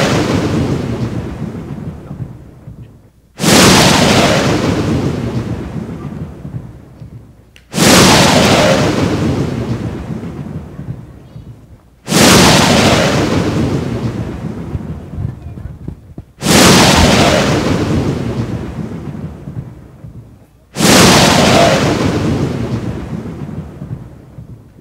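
Thunderclap sound effect played over a hall's sound system, repeating about every four seconds: six sudden claps, each rolling away over several seconds.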